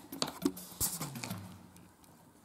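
A few light clicks and taps of a wooden chopstick knocking against a plastic food container as a cat paws at it. The sharpest click comes a little under a second in.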